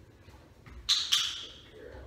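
Dog-training clicker pressed and released: two sharp, high clicks about a quarter second apart, near the middle, marking the dog's sit.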